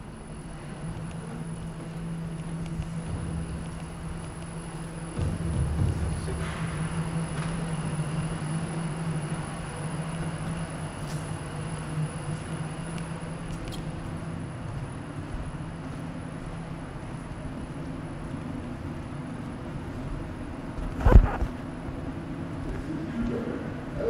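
Steady low hum of brewery machinery in a tank hall, with one loud thump near the end.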